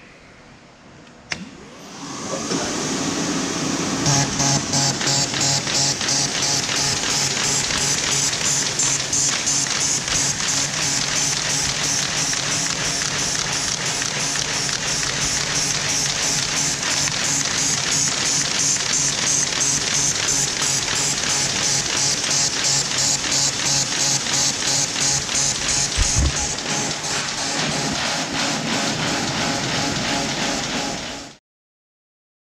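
MBO B16 pile-feed paper folder starting up: a switch click, its drive spinning up over a couple of seconds, then running steadily with a fast, even rhythmic clatter.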